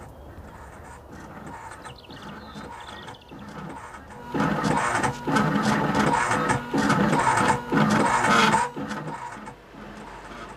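Soft music, then from about four seconds in a machine engraver running its cutter across a brass name plate, a loud mechanical sound in several stretches with short gaps, which stops a second or so before the end.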